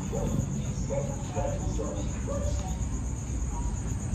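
Crickets chirping: a steady, high, pulsing trill, with short lower notes repeating about twice a second beneath it.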